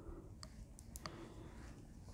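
Knitting needles clicking faintly a few times as stitches are knit.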